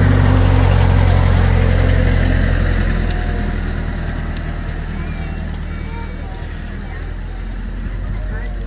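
Engine of a tractor pulling a train of passenger wagons, running at low speed as it goes past. The low engine sound is loudest at first and fades steadily as the tractor moves away.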